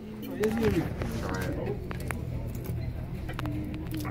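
Restaurant dining-room ambience: short stretches of voices over a steady low hum, with scattered light clicks.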